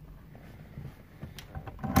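A few light clicks and a sharper knock near the end, over a low background.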